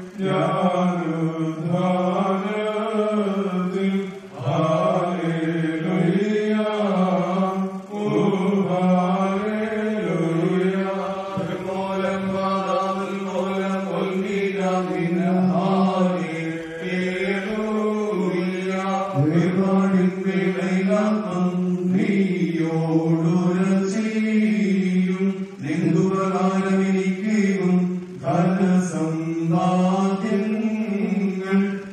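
Priest chanting a funeral hymn of the Orthodox liturgy in a man's voice, a slow wavering melody sung in long phrases with short pauses for breath between them.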